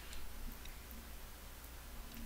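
A few faint, short clicks from computer input at a desk, over a steady low hum.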